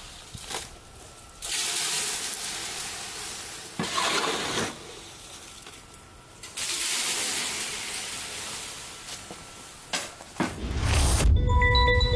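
Concrete spurting from a pump hose into a foundation form, in hissing, spraying bursts of a few seconds each with short pauses between. Near the end, music with a deep bass and held tones comes in.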